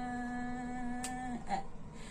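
A woman singing a hymn unaccompanied, holding one long, steady low note for about a second and a half before it breaks off.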